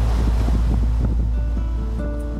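Wind rumbling steadily on the microphone over waves washing on a shore.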